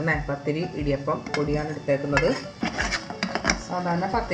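A metal knife scraping and clinking against a steel bowl and an aluminium pot as flour is pushed out, with a run of sharp metal clinks in the second half. Background music with a steady beat plays underneath.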